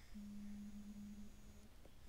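A faint, steady low tone, held level for about a second and a half before cutting off.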